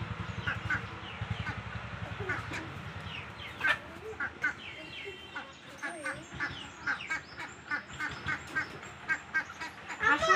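Backyard chickens feeding from bowls: many short, sharp chirps and clicks in quick succession, with a few lower clucks.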